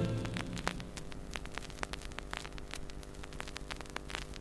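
Vinyl record surface noise in the silent groove between tracks: scattered crackles and pops over a steady low hum and faint hiss. The last of the previous song dies away in the first second.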